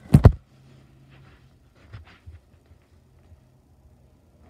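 Camera handling noise: two loud thuds close together as the recording device is grabbed and moved, followed by faint rustling and a couple of small clicks.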